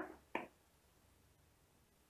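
Near silence: room tone, after a woman's voice trails off at the very start, with one short click about a third of a second in.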